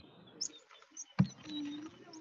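A few short high-pitched animal chirps, a sharp click a little past a second in, then a brief low steady coo-like tone.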